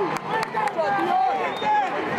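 Several men's voices talking and calling out at once, close by, over the background noise of a stadium crowd.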